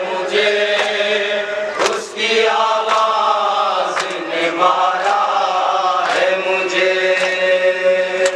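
A group of male voices chanting a Muharram noha in unison, holding long sung lines, punctuated by repeated sharp strikes about once a second.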